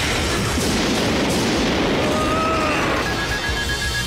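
Anime energy-blast sound effect: a long, dense explosion rumble. About three seconds in, a rapid string of short high beeps starts, the sound of a duel life-point counter running down to zero.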